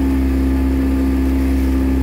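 Outboard motor of a boat running at a steady speed: a constant low drone with an unchanging hum.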